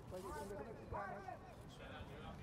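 Faint, indistinct men's voices calling and talking among a group of cricket fielders, heard over a low, steady outdoor background noise.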